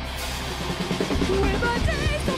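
Live rock band playing: a held low bass note dies away, then drum-kit hits come in about a second in, with a wavering high melodic line entering near the end.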